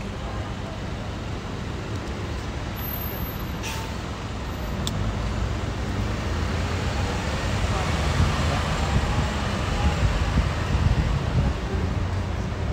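City street traffic heard from a moving tour bus: a steady rumble of engines and road noise that grows louder about halfway through, with two short clicks about four and five seconds in.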